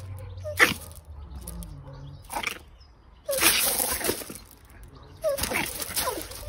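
Dog sounds: a few short, high whimpers and yips mixed with rough, noisy bursts. The longest and loudest burst comes about halfway through and lasts about a second.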